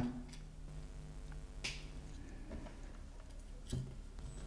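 Faint handling sounds: a few light clicks and a brief scrape as a USB-C cable plug is pushed into a small circuit board and the board is picked up, over low room tone.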